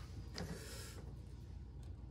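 Faint handling sounds as a plastic action figure is picked up off a table: a brief soft rustle, then a few light ticks, over a low steady room hum.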